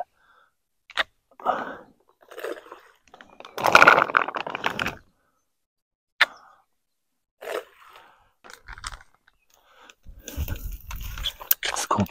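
Close crunching and rustling handling noises in separate bursts, with a couple of sharp clicks, the loudest burst about four seconds in.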